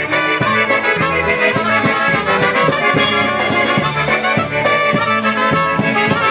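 Live band instrumental: two trumpets play the tune together over accordion and a steady beat.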